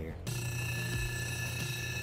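Lapidary cabbing machine running with an opal held to its 220-grit wheel: a steady motor hum with a whine of several steady high tones above it, starting abruptly just after the start.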